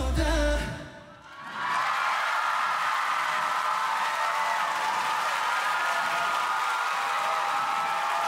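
A K-pop dance track ends on its final beat about a second in, then an audience cheers and screams steadily.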